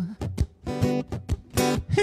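Guitar playing alone between sung lines: a run of short, choppy strummed chords with brief gaps between them.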